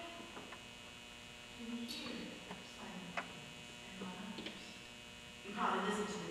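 Steady electrical mains hum from the recording or sound system, with a few faint brief voice-like sounds and clicks over it.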